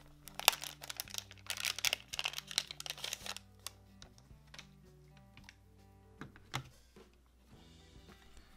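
Plastic antistatic bag crinkling in quick, dense bursts for the first three seconds or so as a new laptop hard drive is handled in it. A few light clicks of handling follow. Soft background music with low, repeating notes plays throughout.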